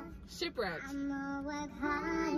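A girl singing along: a short "yeah" sliding down in pitch, then one held note.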